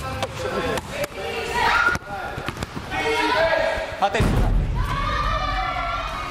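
Players shouting and calling out during an indoor basketball game, with several sharp thuds of the ball bouncing on the court.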